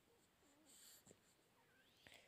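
Near silence: faint room tone, with a very faint wavering sound about a second in.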